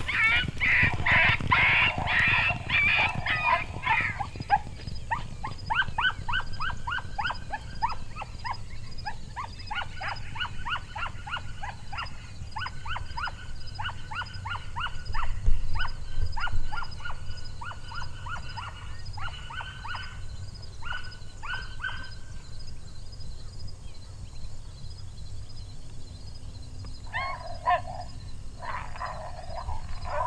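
Fast series of short canine yips, about four a second, dense at first and thinning out after about twenty seconds. A few fuller calls come near the end.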